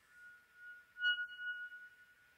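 Flute holding one soft, high, nearly pure note that swells about a second in and then eases off.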